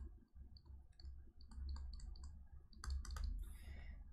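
Faint, irregular clicking and tapping of a stylus on a pen tablet as a word is handwritten, the ticks coming thicker about three seconds in, over a low steady hum.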